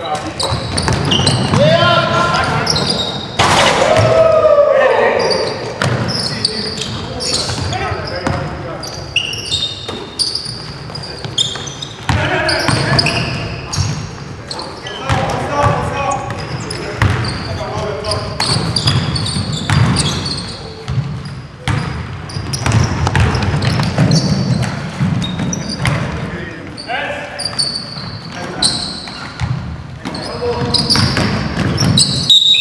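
Basketball game in a gymnasium: the ball bouncing on the wooden court in repeated sharp thuds, with players' indistinct voices calling out, echoing in the large hall.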